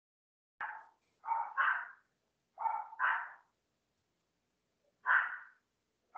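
A dog barking repeatedly, heard over the call's audio: about six short barks, some in quick pairs.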